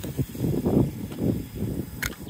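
Wind buffeting the microphone: an uneven low rumble that rises and falls, with no engine running.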